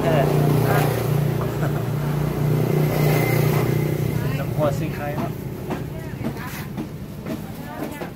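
A motor vehicle engine running close by, a steady low hum that fades away after about four seconds, with voices over it.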